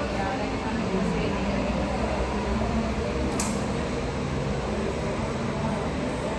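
Boeing 737 MAX jet engines running at taxi power as the airliner rolls past, a steady rumble and hiss. Indistinct voices can be heard underneath, and there is a single sharp click a little past halfway.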